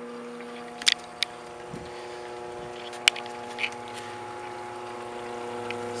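Hot tub's electric pump motor running with a steady mains-frequency hum, with a few short clicks about one second and three seconds in.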